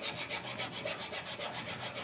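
Small hand file rasping in quick, even strokes along the inside edges of a small styrene model part, cleaning up its rough cut edges.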